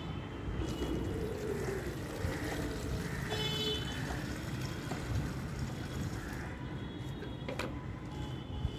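Water running from a tap into a plastic bucket, a steady pour.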